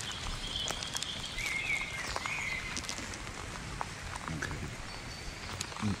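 Birds calling in short whistled phrases over a steady outdoor hiss of light rain, with scattered soft ticks of drops.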